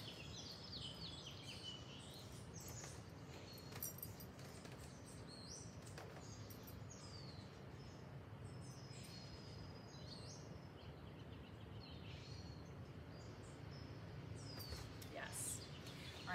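Faint bird chirps: short, high, falling calls scattered throughout, over a steady low hum of outdoor background noise.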